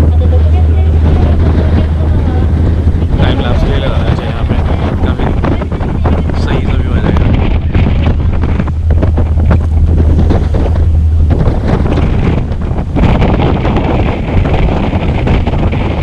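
Strong wind buffeting the microphone on the open deck of a moving ship, a loud, heavy rumble that slackens a little after about eleven seconds.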